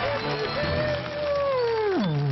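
A man's long howl into a handheld microphone, held and then dropping steeply in pitch near the end, over loud stage music.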